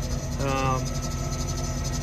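Engine idling with a steady low rumble, a faint thin whine above it from about a second in. About half a second in, a man's voice gives a short drawn-out 'uh'.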